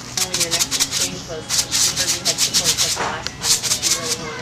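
Dry mustard seeds rattling as they are shaken in a container, in quick rhythmic shakes about five a second with two short pauses.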